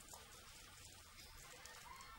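Near silence: faint, steady background hiss.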